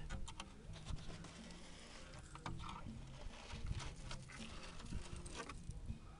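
Rust flakes crumbling off a rotted-through steel rocker panel and pattering onto asphalt, a string of irregular small clicks and crackles.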